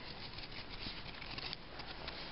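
A small dog's paws crunching softly and unevenly in packed snow as it walks.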